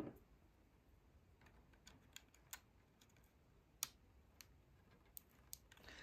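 Near silence broken by a few faint, scattered clicks from fingers handling a bare circuit board, one sharper click a little before four seconds in.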